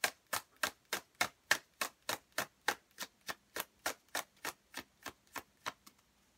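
A tarot deck being shuffled by hand, each pass of cards from hand to hand giving a short crisp slap in a steady rhythm of about three or four a second.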